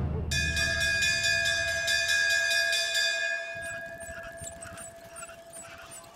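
A bell-like chime struck once, ringing on several steady tones and fading out over about three seconds, over a low rumble that dies away; a sound-effect accent on the soundtrack.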